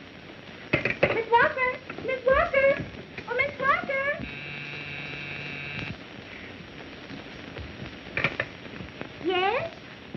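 Voices talking in quick short bursts, then a steady buzzing tone lasting under two seconds, then a low hum with a short knock and a brief rising voice near the end.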